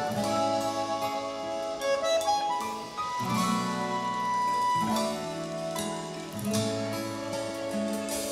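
Instrumental introduction of a sertanejo song played by a small live band: accordion with acoustic guitar and bass, in long held notes.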